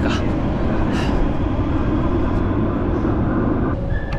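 Metro train rumbling along an underground station platform: a loud, steady low rumble that cuts off suddenly near the end.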